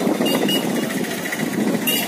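A small engine running steadily, with a fast, even rattle.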